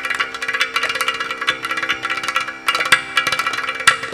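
Mridangam and ghatam playing a fast Carnatic percussion passage of rapid hand strokes over a steady drone, easing briefly about two and a half seconds in.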